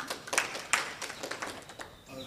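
Scattered, irregular hand claps from a few people, light and uneven.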